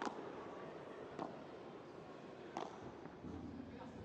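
Padel ball being struck back and forth in a rally: three sharp hits of the ball, a little over a second apart, over a low murmur of arena crowd.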